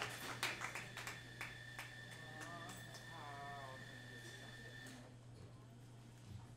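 Audience applause dying away to a few scattered claps over the first couple of seconds. A faint voice follows in the room, over a steady low electrical hum and a thin high whine that stops about five seconds in.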